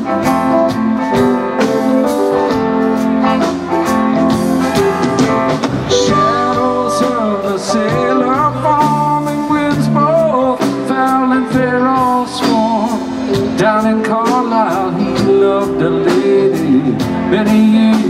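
Live rock band playing an instrumental passage: electric guitars, bass, organ and drums, with a lead line bending and gliding over sustained chords and a steady drum pulse.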